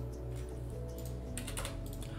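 A short run of computer keyboard and mouse clicks, mostly in the second half, over quiet steady background music.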